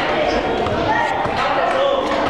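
Indistinct chatter of several people in a large, echoing hall, with scattered knocks and clatter of metal folding chairs being handled and set down.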